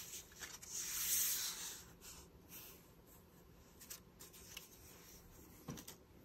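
Soft rustling and rubbing, loudest about a second in, then a few faint light clicks.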